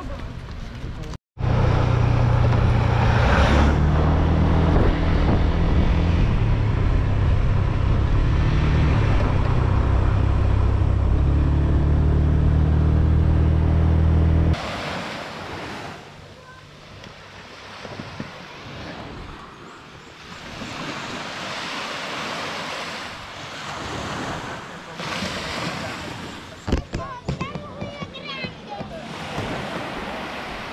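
Loud, steady low rumble of wind buffeting the microphone while moving along a road. It cuts off suddenly about halfway through, giving way to softer surf washing on a beach.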